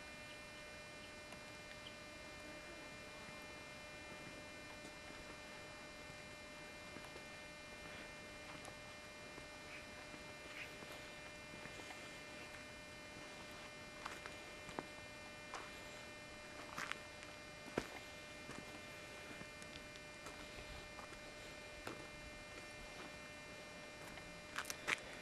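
Faint, steady electrical hum made of many stacked tones, with a few soft clicks in the second half.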